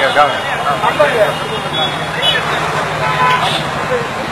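Voices talking over a steady low hum from a running engine.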